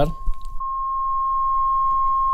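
Steady pure sine tone from a phone's tone generator, picked up by a Stellar X2 large-diaphragm condenser microphone. It swells to full level about half a second in and holds there, with faint higher overtones above it. The overtones are the extra harmonics that this microphone shows on the test.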